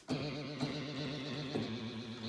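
Moog synthesizer sounding a sustained low note that cuts in suddenly and holds steady, with a fast regular warble in its pitch.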